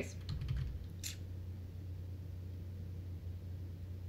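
A few quick computer keyboard keystrokes in the first second, over a low steady hum.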